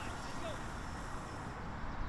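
Steady outdoor background noise with a low rumble and faint, indistinct voices in the distance.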